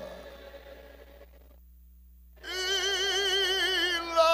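After a quieter stretch, a man's voice comes in about halfway through and holds one long sung note with a strong, even vibrato, amplified through a microphone in a reverberant hall.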